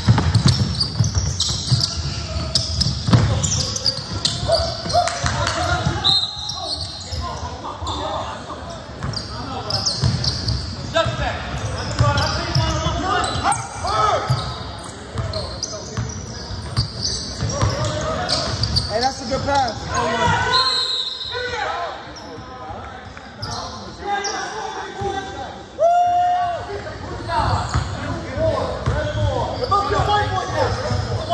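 Basketball dribbled on a hardwood gym floor during play, repeated bounces echoing in a large hall, mixed with players calling out.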